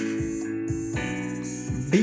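Electronic keyboard playing an R&B chord progression over a drum beat: an A major chord is held, then it moves to the next chord about a second in.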